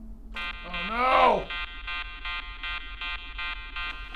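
Spaceship alarm sound effect: a harsh electronic buzzer begins just after the start and keeps sounding with a fast, even pulse, the warning that life support has been disabled. About a second in, a voice gives one short cry that rises and falls in pitch over it.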